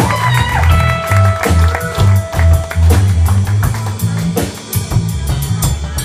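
Live rock band playing: electric guitars over bass and a steady drum beat, with a long held note sounding for about two seconds shortly after the start.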